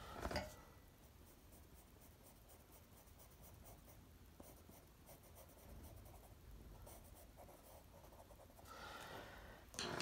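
Faint scratching of a watercolour pencil colouring on paper, after a soft knock at the very start; the scratching grows a little louder near the end.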